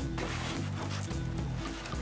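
Background music: steady low notes that change every half second or so, with light ticks over them.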